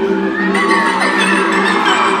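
A live band's sustained chords ringing through an arena, with the crowd screaming and whooping over them. A few high, sliding screams stand out about half a second to a second and a half in.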